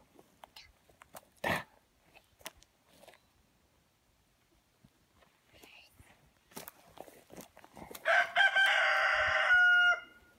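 A rooster crows once near the end, a loud drawn-out call lasting about two seconds, with faint scattered rustles and clicks before it.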